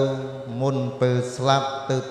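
A man's voice chanting in long held notes on nearly one pitch, a mantra-like recitation, with short breaks between phrases.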